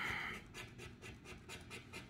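Yellow plastic scratcher coin scraping the coating off the bonus spots of a Magnificent Millions scratch-off lottery ticket in short repeated strokes, loudest in the first half second, then fainter.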